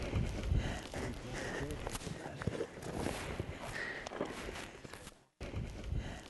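Boots scuffing and crunching on rock and loose stone as a hunter moves over a rocky ledge, with irregular small knocks and clothing rustle. The sound drops out for a moment about five seconds in.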